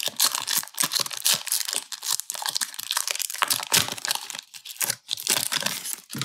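Foil wrapper of a Pokémon trading card booster pack being crinkled and torn open, a dense run of papery crackles that eases slightly near the end.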